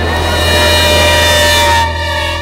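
Passenger train approaching along the track, its horn sounding one long steady multi-tone blast over the rising noise of the train. The sound cuts off abruptly just before the end.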